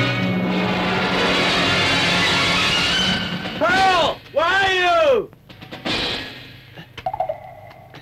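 Film soundtrack music that ends about three seconds in. It is followed by two drawn-out pitched cries, each rising and then falling, and a single sharp hit about six seconds in.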